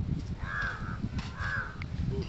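A crow cawing twice, about half a second apart, over a low steady rumble.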